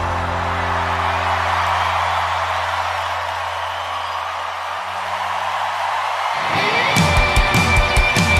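Live Latin Christian worship rock band music: a held closing chord with a low bass note slowly fades out, then the band comes back in with a rising swell and steady drum beats near the end as the next song starts.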